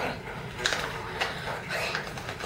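Small cardboard cosmetics box being handled and pulled open by hand, with two sharp crinkling clicks about half a second apart.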